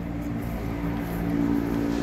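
A steady droning hum of several held low pitches, growing slightly louder, like a vehicle engine running nearby.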